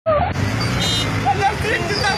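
Several voices of a crowd talking and calling out, over the low, steady running of a car engine close by.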